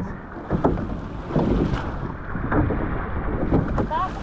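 Wind on the microphone over rushing sea water and the splash of a surf boat's oars, about one stroke a second.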